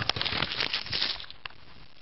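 A plastic snack wrapper crinkling as it is handled: a dense crackling rustle for about a second and a half, then it stops.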